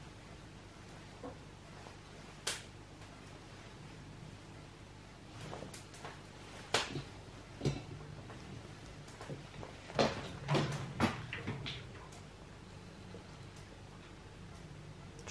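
Scattered light knocks and clinks of stainless steel pots and a mesh strainer being handled and set down on a wooden table. A single knock comes a couple of seconds in, then a run of them over the later part.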